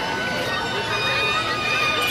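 Voices of people around a spinning children's helicopter ride, with a steady high whine from the ride running underneath.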